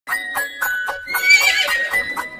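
Horse sound effect: a horse whinnying, the loudest sound, from about a second in, with rhythmic hoofbeats at about four a second, over music.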